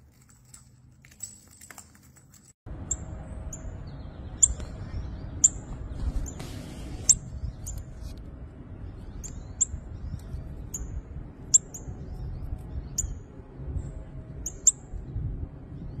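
Northern cardinal giving short, sharp, high chip calls, roughly one a second, over a steady low outdoor rumble that starts abruptly about two and a half seconds in.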